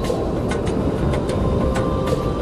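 Strong wind blowing steadily with a heavy low rumble, with short sharp snaps at irregular intervals, about three a second, under faint background music.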